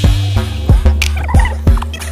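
Background music with a steady beat: about three drum hits a second over a sustained bass, with short warbling pitched sounds above.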